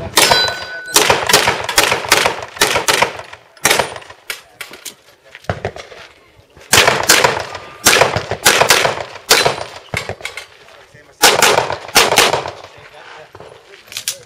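Handgun shots fired in rapid strings of several shots a second, broken by short pauses of one to two seconds between strings.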